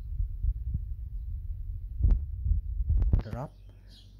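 Low rumbling, thumping noise with two sharp knocks, about two and three seconds in, and a brief voice sound just after the second knock; the rumble stops near the end.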